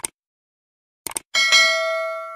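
Short click sound effects, then a single bell ding that rings on and slowly fades: the sound effect of a subscribe-button click and notification-bell animation.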